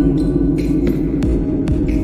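Slowed, reverb-heavy lofi music: sustained low tones with light, scattered percussive hits, between sung lines.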